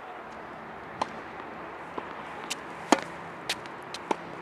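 Tennis balls being struck by rackets and bouncing on a hard court: a string of sharp pops, the loudest about three seconds in.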